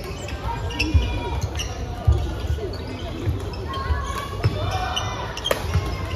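Badminton rally in a large sports hall: sharp shuttlecock strikes from rackets every second or so, shoes squeaking on the wooden court floor, and a steady babble of voices from the busy hall, all echoing.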